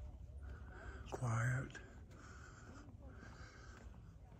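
A single short voice-like call about a second in, lasting about half a second and wavering in pitch, over a low, steady outdoor background.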